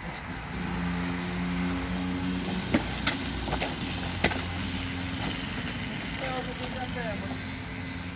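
A motor vehicle's engine running with a steady low hum that comes up about half a second in and fades near the end. Over it, three sharp smacks in the middle as inflatable toy hammers strike each other.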